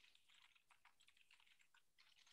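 Faint, quick typing on a computer keyboard: a dense run of small key clicks.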